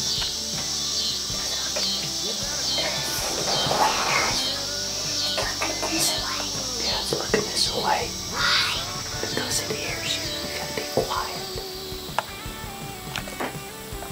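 Hushed whispering voices with scattered small clicks and rustles, over faint background music.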